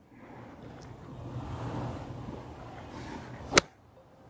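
Lob wedge striking a golf ball off the turf on a short pitch shot: one sharp click near the end. Before it comes a low rushing background noise that builds over a few seconds.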